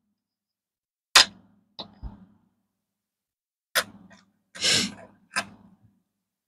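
Handling noise from pennies being picked up and set down on a wooden table: several sharp separate clicks and taps, the loudest just over a second in, with a short rushing sound about three-quarters of the way through.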